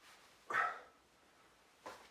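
A dog giving one short bark about half a second in, with a brief sharp tap near the end.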